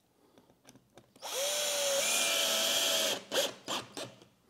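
Makita cordless drill/driver driving a screw through a metal mount bracket into the back of the absorber panel. The motor whine starts about a second in, rises briefly and then holds steady for about two seconds before stopping. A couple of short clicks follow.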